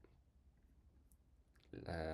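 Near silence with room tone, a faint single click about a second in, then a hesitant "uh" near the end.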